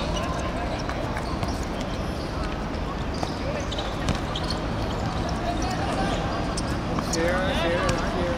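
A football being kicked on an artificial pitch: a few short thuds, the sharpest about four seconds in, over steady outdoor background noise. Players call out, with a loud shout near the end.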